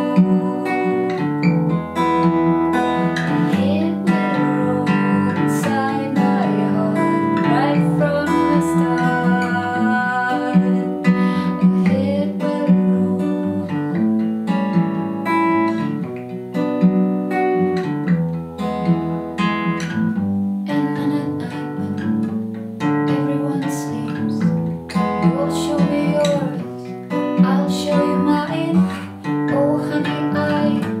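A woman singing with vibrato over her own acoustic guitar accompaniment, a solo voice-and-guitar performance. The guitar keeps a steady strummed pattern while the voice comes and goes in phrases.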